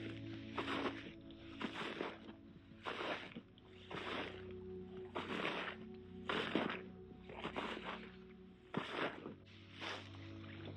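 Footsteps crunching through frozen, frost-stiff grass, about one step a second, over soft ambient background music.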